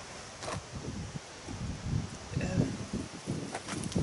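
Wind buffeting the microphone outdoors, with leaves rustling: an uneven low rumble that rises and falls throughout.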